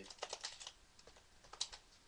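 A quick run of light clicks and rattles, then a single sharper click about a second and a half in, from a toy airsoft gun being handled.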